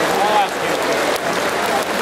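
Arena crowd applauding steadily, a dense even clapping with a brief voice call about a quarter second in.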